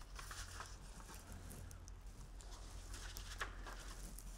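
Faint rustling and light taps of paper and card as sheets are lifted out of a card folder, over a low steady room hum.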